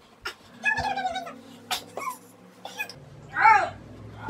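A few short, high, wavering vocal calls, whiny in tone: two about a second in and a longer one rising and falling about three and a half seconds in, with a few light knocks in between.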